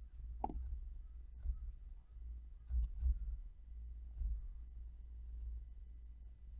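Steady low background hum with a few faint short sounds, one of them a brief pitched sound about half a second in.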